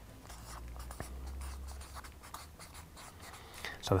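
Felt-tip marker writing on flip-chart paper: a run of short, faint scratchy pen strokes as a word is written.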